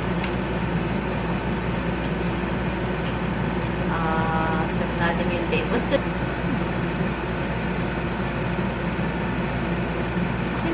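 A steady low mechanical hum, with a few small sharp clicks from a Canon EOS M50 camera being handled about five to six seconds in.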